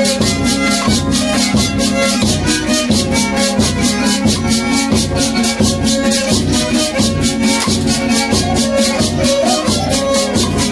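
Violin and guitar playing a lively dance tune, with a rattle shaken in a quick, even beat of about four strokes a second.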